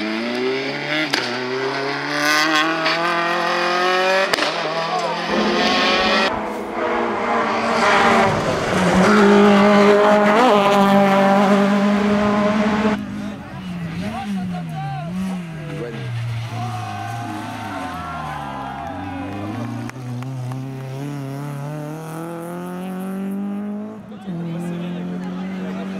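Rally car engines at full revs on a tarmac stage, several cars in turn. The pitch climbs through the gears and is loudest about 8 to 12 seconds in. It then changes abruptly to a quieter engine whose pitch rises and falls with gear changes and lifts.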